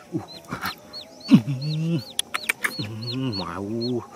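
Chickens clucking, with short high-pitched cheeps repeating throughout and longer low calls. A few sharp clicks come about halfway through.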